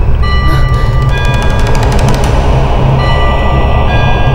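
Horror film score: a loud low rumbling drone under long, high, sustained ringing tones, with a fast run of clicks in the first couple of seconds.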